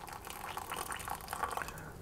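Hot water poured from an electric kettle into a mug, a steady light trickle of liquid filling it.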